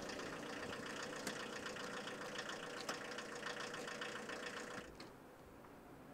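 A steady mechanical hum that stops abruptly about five seconds in, leaving only faint background.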